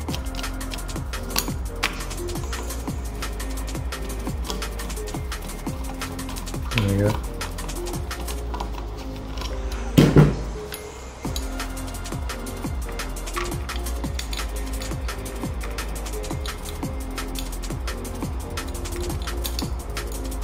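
Background electronic music with a steady, driving beat. A brief louder sound stands out about halfway through.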